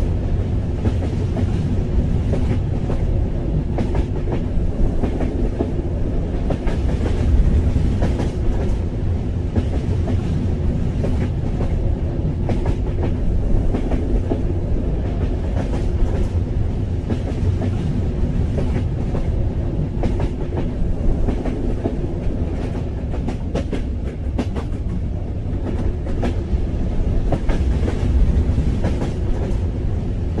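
Train running along the track: a steady low noise with the clickety-clack of wheels over the rail joints.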